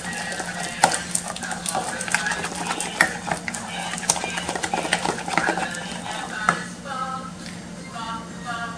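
A wooden spoon stirring thick cream in a stainless steel pot, with irregular scrapes and knocks against the metal, over a low steady hum.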